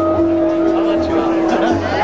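Live jazz band playing a slow ballad: a horn holds one long note for nearly two seconds over upright bass and drums.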